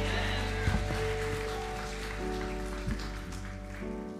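Church keyboard holding sustained chords as a gospel song winds down, with the singing stopped. Two short thumps, about a second in and near three seconds, as microphones are handled.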